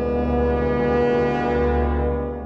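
Film soundtrack: a single sustained, low, brassy drone with many overtones, swelling to its loudest about a second and a half in.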